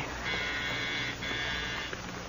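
Apartment doorbell buzzer, a radio-drama sound effect, buzzing twice: a steady electric buzz about a second long, a brief break, then a slightly shorter second buzz.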